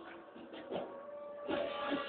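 Sitar played solo in a slow, unmetered alaap: its notes fade into a quiet stretch, then a strong new stroke rings out about one and a half seconds in.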